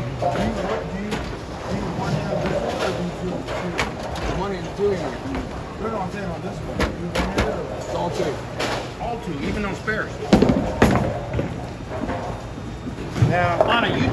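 Bowling alley sounds: background voices with scattered sharp knocks and clatters of bowling balls and pins. The loudest is a pair of knocks about ten seconds in.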